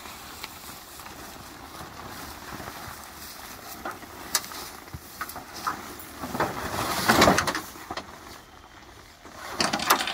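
Nylon tent fabric rustling and brushing as a whole truck tent is hoisted and dragged into a pickup bed, with a few light knocks; the rustle swells loudest for a couple of seconds past the middle, then dies down.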